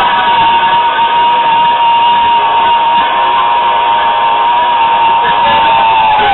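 Lo-fi noise-punk recording: a dense wash of distorted band noise, with one high tone held steady throughout that starts sliding down near the end.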